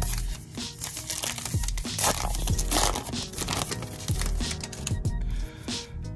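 Crinkling and tearing of a foil trading-card pack wrapper being ripped open, loudest about two to three seconds in, over background music with a steady beat.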